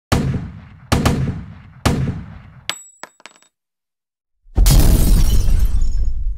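Intro sound effects: three heavy booming hits about a second apart, then a short high ringing ping just before the three-second mark. After a second of silence, an explosion with a long rumbling tail sets in.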